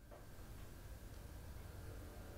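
Quiet room tone: a steady low hum with faint hiss, fading in at the very start.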